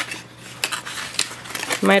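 Hands rummaging through a cardboard product box and its cardboard insert: scattered light scrapes and clicks of cardboard being handled.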